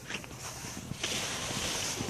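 Footsteps scuffing on a stone path with rustling, and a steady hiss that grows louder about a second in.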